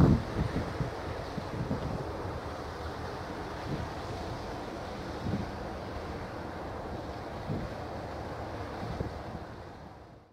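Wind buffeting the microphone in irregular low gusts over a steady rush of wind and water. The strongest gust comes right at the start, and the sound fades near the end.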